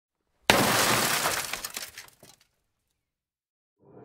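A sudden crash about half a second in, a spray of crackles that fades out over about two seconds, then silence.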